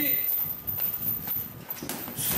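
Boxing gloves striking a leather heavy bag: a few scattered thuds, sparser and quieter than the flurries around them, the clearest one near the end.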